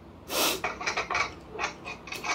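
Mouth sucking and slurping crab meat out of a snow crab shell: one loud slurp about half a second in, then a quick run of short, wet sucking smacks.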